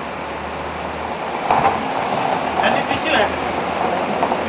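A car engine idling steadily with a low hum, under a constant background hiss, with faint voices about halfway through.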